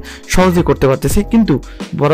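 A voice over background music.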